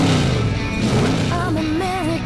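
Rock music soundtrack. A wavering lead melody comes in about a second and a half in.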